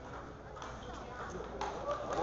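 Table tennis rally: a celluloid-type ball clicking sharply off rubber-faced bats and the table, a few hits spaced under a second apart, over low chatter from spectators that swells right at the end as the point finishes.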